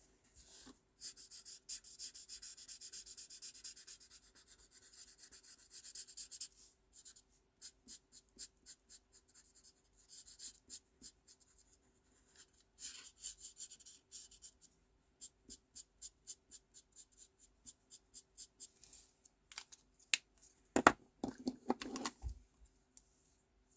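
Faint scratching of an alcohol marker's felt nib on cardstock in quick short strokes: a dense run of rapid strokes for the first few seconds, then sparser flicks. Near the end, a few louder knocks as the markers are picked up and set down.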